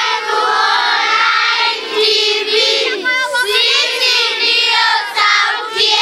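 A group of children singing together in high voices.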